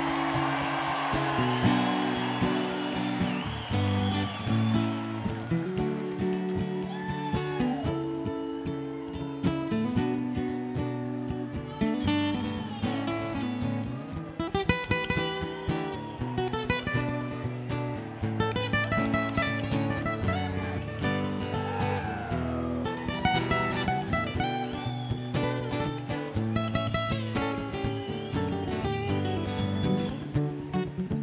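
Two acoustic guitars playing an instrumental passage together: a steady strummed part under fast picked lead lines, with several notes that bend up or down in pitch.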